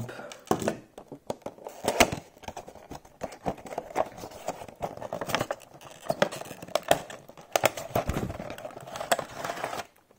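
A cardboard toy box with a clear plastic window tray being opened by hand: plastic crinkling with many irregular clicks and taps.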